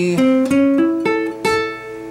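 Acoustic guitar playing a moderate blues shuffle line: about five single plucked notes in turn, each ringing on until the next.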